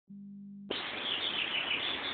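Small birds chirping over a steady outdoor background hiss, after a brief low hum in the first half-second.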